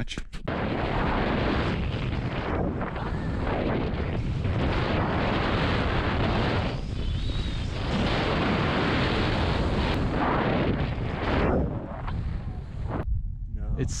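Heavy wind buffeting on an action camera's microphone from skiing fast downhill, mixed with skis running through soft snow. It swells and eases a few times and drops away about a second before the end.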